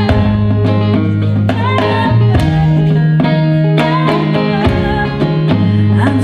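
Live acoustic roots band playing an instrumental passage: banjo picking over a steady electric bass line and drum kit, with a regular beat that includes handclaps.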